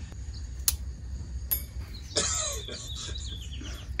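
Two light metallic clicks, then a short scratchy scraping as a snap ring is worked out of its groove on the air can of a Fox Float X2 rear shock.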